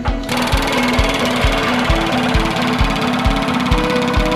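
A pneumatic hammer rapidly drives a steel aeration probe down into the soil of a septic drain field, starting about a third of a second in. This is the probing stage, before compressed air is blasted in to break up the biomat. Background music with a steady beat plays under it.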